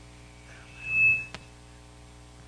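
A single high, pure tone swells up and fades away over about a second, over a steady electrical hum. A faint click follows it.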